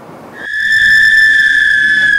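Several small whistles blown together by a group of people: one loud, steady, shrill tone that starts about a third of a second in and holds.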